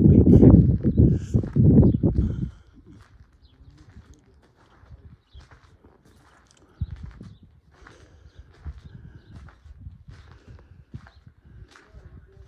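Footsteps scuffing and crunching on a dirt and gravel floor as a person walks slowly forward, after a loud low rumble in the first two and a half seconds.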